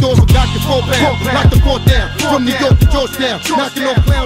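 Hip hop track with a rapped vocal over deep bass drum hits that drop in pitch, about one every second and a bit, with hi-hats ticking above.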